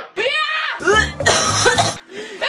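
A male cartoon character's voice speaking in German with coughing, from a sore throat.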